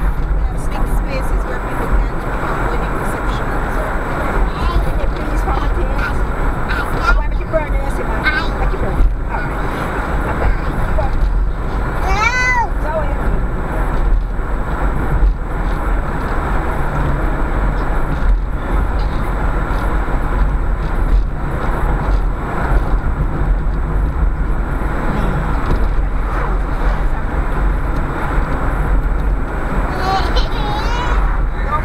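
Steady road and engine noise inside a car's cabin, cruising at a constant speed, with a low rumble underneath.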